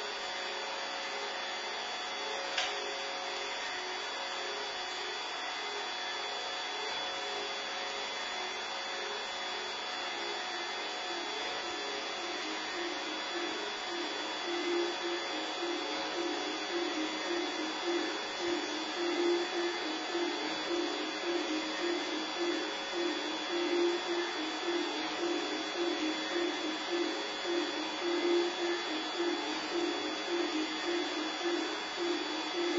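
Experimental live electronic music: a steady hissing drone with several held high and middle tones, a single short click a few seconds in. From about halfway a rapidly pulsing low tone comes in and grows louder.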